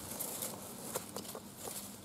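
Faint rustling of grass and forest litter, with a few light scattered ticks, as a hand holding a knife parts the grass around a mushroom.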